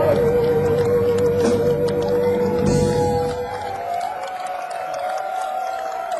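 Live electric blues band playing, a long held note with vibrato over the full band. About three and a half seconds in, the band drops out and a single higher wavering note, reached by a downward slide, carries on alone.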